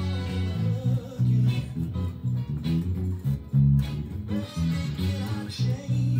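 Home-built electric bass with new DR Hi-Beam roundwound strings, plucked with the fingers through a small Fender practice amp with flat EQ and the tone knob turned all the way down, playing a steady soul bassline. The original recording's band plays underneath.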